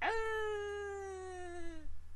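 One long whining vocal sound that starts abruptly, holds for about two seconds while slowly falling in pitch, then stops.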